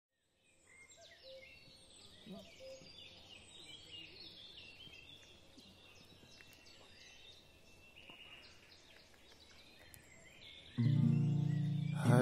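Faint birdsong: many short chirps and whistles from several birds. Near the end a much louder sustained musical chord begins as the song starts.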